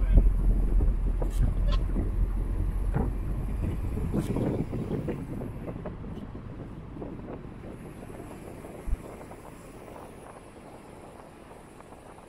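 Wind rushing over the microphone of a moving car, with a low road rumble and scattered crackles; the rumble dies away over the second half as the noise gets quieter. A single short knock comes about nine seconds in.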